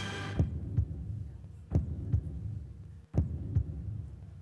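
Heartbeat sound effect over a low steady drone: three double thumps, each pair about a second and a half after the last. It is a tension cue that runs while the contestants decide.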